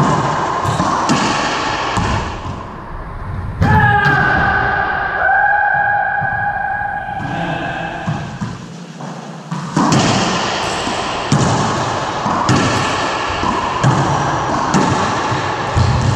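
Racquetball rally in an enclosed court: sharp echoing hits of the ball off racquets, walls and the hardwood floor. Play pauses in the middle, when a long held tone with overtones sounds from about four to seven seconds in. Quick hits pick up again from about ten seconds in.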